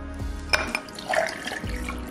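An ice cube clinks into a tall drinking glass about half a second in, then water is poured from a glass pitcher over the ice.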